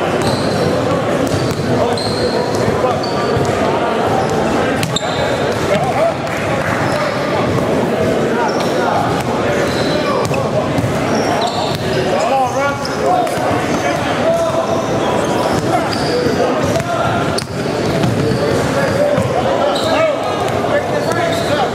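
Basketballs bouncing on a hardwood gym floor, a thud now and then over the steady chatter of many voices, echoing in a large gymnasium.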